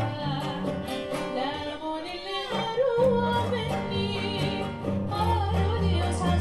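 A woman singing a slow, ornamented melody with wavering turns, accompanied by a bowed cello holding low notes and a plucked acoustic guitar.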